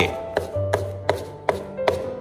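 A cleaver chopping garlic into fine mince on a wooden cutting board, sharp even knocks at about three chops a second.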